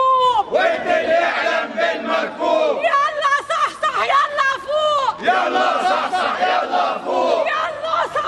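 A woman shouting protest chants, with a crowd of voices chanting and shouting along.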